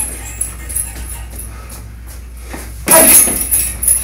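A steady low hum with a few faint knocks, then a loud shout about three seconds in.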